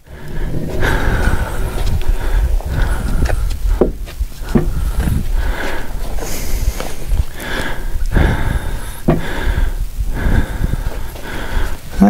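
Low, uneven rumble of wind buffeting the microphone, with a few sharp knocks of a sawn beam being handled on the sawmill bed.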